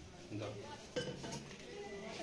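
Faint clinks of metal vessels, the sharpest about a second in, under low murmuring voices.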